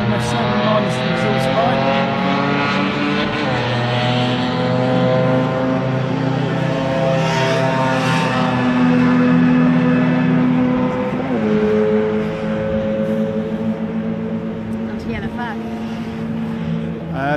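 Classic Mini racing cars' engines running hard as they go round the circuit: a steady engine note whose pitch slides slowly. One car's note gives way to another's about three and a half seconds in and again about eleven seconds in.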